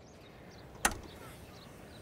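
A single sharp click of a car's tailgate latch releasing, a little under a second in, over faint birdsong.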